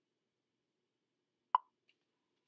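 Mostly quiet, then a single short, sharp pop about one and a half seconds in.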